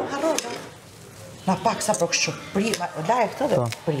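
Mostly a man and a woman talking, with a few light clinks of kitchen utensils against dishes.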